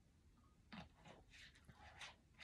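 A person's faint, short breathy noises, about four quick bursts in a row starting just under a second in, sounding like stifled coughs or sniffs that the person excuses herself for.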